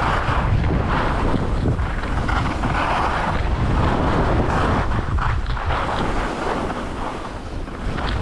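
Wind rushing over a GoPro's microphone as a skier goes downhill, with skis scraping across packed snow in a swell roughly once a second on each turn. The rush eases briefly near the end.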